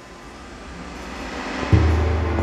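Dark ambient electronic concert music: a rushing noise that grows steadily louder, then a sudden deep low note with overtones cutting in near the end and holding as a loud drone.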